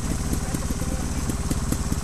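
Single-cylinder trials motorcycle engine idling steadily, with an even low pulse.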